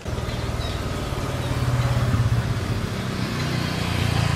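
Small motor scooter engine running close by, with a rapid steady firing beat, getting a little louder about halfway through.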